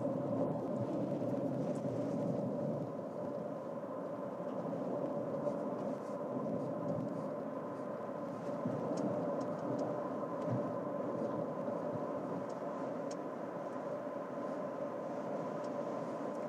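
Steady cabin noise of a 2024 Toyota RAV4 moving at road speed: an even hum of road and tyre noise with a faint steady tone running through it.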